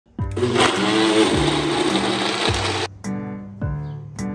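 Ninja Auto IQ blender motor running, then cutting off abruptly about three seconds in, over background music with a steady beat that continues alone.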